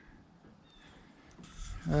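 Faint outdoor background noise, then near the end a man's long, drawn-out 'uh'.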